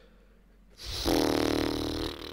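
A person making a drawn-out, raspy, growly vocal sound without words, starting just under a second in and lasting about a second and a half.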